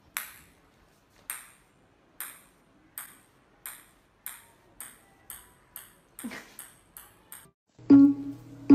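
Celluloid ping-pong ball bouncing on a hard tiled floor: about a dozen sharp, high clicks that come closer and closer together.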